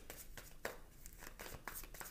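Quiet room with faint rustling and several soft, scattered clicks.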